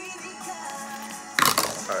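Background music, and about one and a half seconds in a single sharp crack with a brief rustle after it: the tight seal of a clear plastic photo-card sleeve tearing open.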